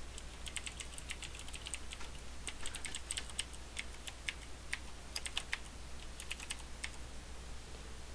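Typing on a computer keyboard: quick, irregular runs of key clicks, thinning out with short pauses in the second half.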